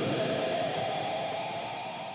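The last sustained note of a distorted electric guitar ringing out as the song ends. It settles on one steady pitch and fades away.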